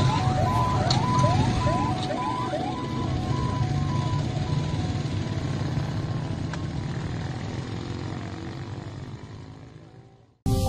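An emergency vehicle siren alternating between a higher and a lower note with quick rising slides, fading away over the first few seconds, over a steady low rumble. The whole sound fades out near the end.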